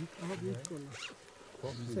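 Indistinct voices of people talking, low in level, with a brief faint high rising sound about a second in.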